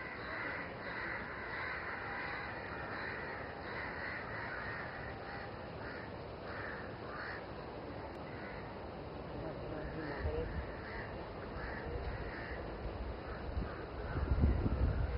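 Birds calling in a run of short repeated calls over a steady outdoor background, with low rumbling coming in near the end.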